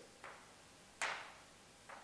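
A table tennis bat's rubber brushing across a hand-held sheet of paper: a short papery swish about a second in, with two fainter brushes near the start and end. It is a light, grazing scrub, the very thin contact used to practise putting spin on a serve.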